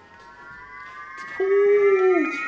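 Partygoers' drawn-out rising cheer, a high 'woooo' that climbs slowly in pitch, egging on someone chugging a drink. A lower voice joins with a held note about one and a half seconds in, and the cheering gets louder.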